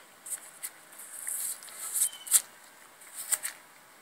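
Hands handling a barked yew wood stave: dry scraping and rustling against the bark, with a few sharp clicks, the sharpest a little past halfway.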